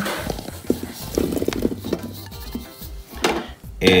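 Small whole potatoes tumbling from a bowl into a slow cooker's crock, a short run of knocks and clatter about a second in, over background music.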